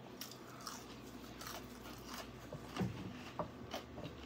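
A person biting and chewing deep-fried jerk liver: faint, scattered crunches and wet mouth clicks, a few of them louder about three seconds in.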